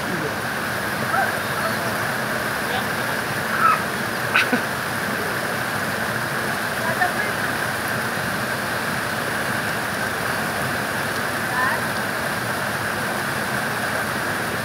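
Steady rush of flowing water, with faint voices now and then.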